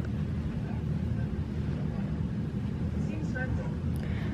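A television playing a drama scene: a steady low rumble from the soundtrack, with faint brief dialogue about three seconds in.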